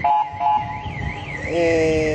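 An electronic alarm warbling rapidly and steadily, about four rises and falls a second. A steady lower tone joins it about one and a half seconds in.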